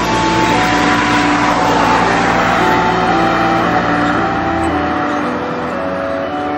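A car passing by: a swell of tyre and engine noise that builds over the first second or two and fades away, with a low rumble that drops out near the end. Soft music with held melodic notes plays throughout.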